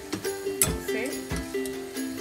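Background music with held notes and a beat.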